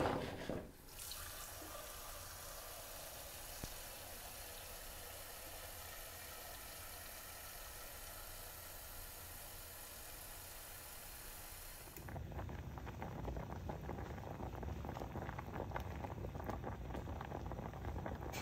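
Kitchen tap running in a steady stream into a saucepan of butternut squash cubes, filling it with water. About twelve seconds in, this gives way to the pot boiling hard on a gas burner, a louder bubbling with fine crackles.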